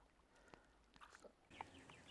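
Near silence, with a few faint clicks and a quiet background hiss.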